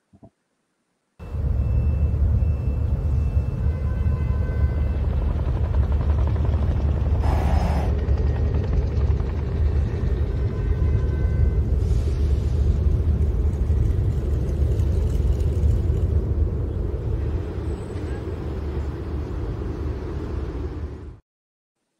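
Corporate intro soundtrack: a steady, heavy bass drone with a few short high notes, and a whoosh about seven seconds in. It starts suddenly about a second in and stays loud and even throughout.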